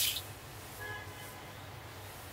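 Sizzle of hot oil poured over boiled pork trotters in chili broth, cutting off within the first moment. After that only a low steady hum with a few faint tones.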